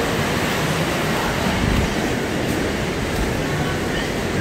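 Steady rushing outdoor noise with an uneven low rumble underneath, level throughout.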